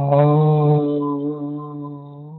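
A man chanting one long tone on a single steady pitch, mantra-like, loudest at first and slowly fading.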